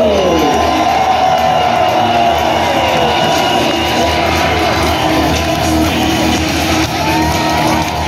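Wrestler's entrance music playing loudly over the arena sound system, with the crowd cheering and whooping underneath.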